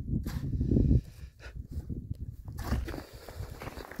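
Wind rumbling on the phone's microphone for about the first second, then quieter crunching of footsteps in deep snow, with handling noise as the camera is turned.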